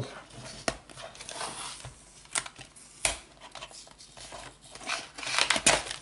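Paper seal strip being torn off a cardboard trading-card booster box: a few sharp snaps and crackles of card and paper, with a busier burst of tearing and rustling near the end.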